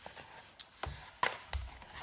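Four soft knocks a few tenths of a second apart, the last one with a low thud.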